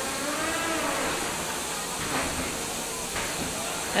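Steady hissing noise of a robot combat arena during a fight, with faint tones underneath that rise and fall.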